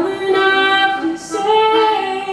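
A woman singing long held notes with accordion accompaniment.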